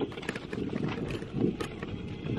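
Wind buffeting the microphone as a low rumble, with scattered short clicks and rustles.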